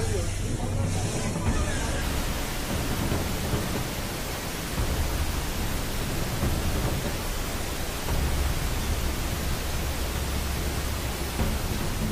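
Dashcam recording of an earthquake-triggered rockslide onto a road: about two seconds in, a steady, loud rushing rumble begins as rock and earth pour down the slope, with no separate impacts standing out.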